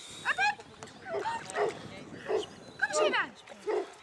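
Newfoundland dog whining and yipping in a series of short, high, falling calls.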